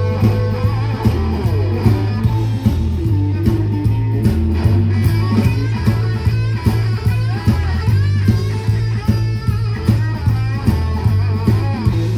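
Live blues band playing an instrumental passage: an electric guitar lead with bending notes over a steady bass line and a regular drum beat.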